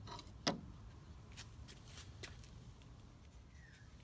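A sharp click about half a second in as a folding metal utility knife snaps onto a magnetic tool bar, followed by a few faint light ticks of metal against the bar.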